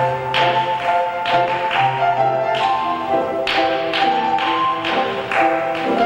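Piano music with a steady beat: struck chords and melody notes about twice a second, accompanying ballet class exercises.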